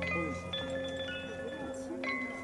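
Hanging chimes struck one after another, clear high tones at several pitches ringing on and overlapping, over a low held tone that fades away early on.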